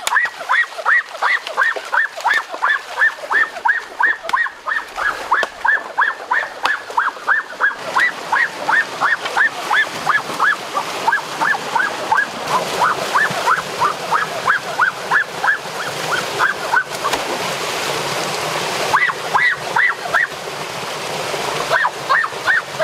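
A short, rising, animal-like call repeated steadily about three to four times a second, over rushing stream water and splashing that grows louder partway through.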